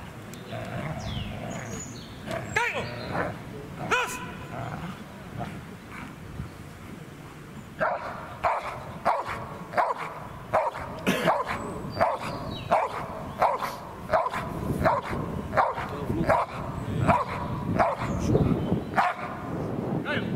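A young Belgian Malinois barking at a decoy in a bite suit while guarding him in protection work. The barks come sporadically at first, then from about eight seconds in they settle into a steady run of about two a second.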